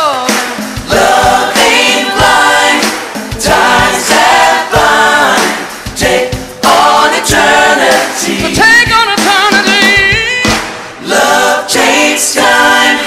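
Gospel vocal group singing in close harmony over a live band, with drum hits keeping the beat underneath. About nine seconds in a lead voice holds a high, wavering note above the group.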